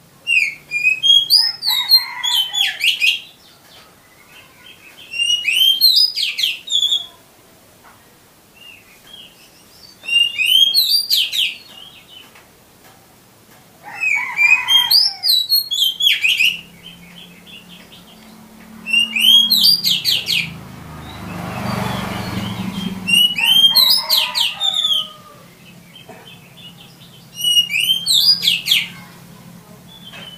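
Oriental magpie-robin (kacer) singing: seven short bursts of varied whistles and quick rising-and-falling notes, one every four to five seconds, with short pauses between them.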